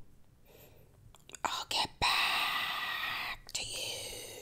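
A woman whispering: after a quiet start and a couple of small mouth clicks, a long breathy whisper starts about halfway in, breaks off briefly, and resumes near the end.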